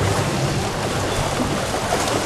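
Steady wash of noise in an indoor competition pool: water churning and splashing from the racing swimmers, carried in the reverberant hall.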